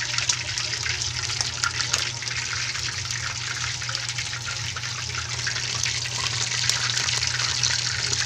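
Whole pork hocks deep-frying in a wok of hot oil: a steady sizzle and bubbling, peppered with small crackles.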